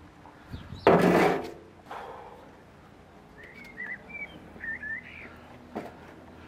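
A short, loud rasping burst of noise about a second in, then a blackbird singing faintly in the second half: short warbled phrases, with a click near the end.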